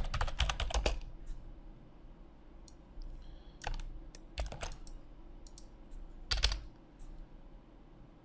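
Computer keyboard typing: a quick run of keystrokes in the first second, then a few scattered key presses.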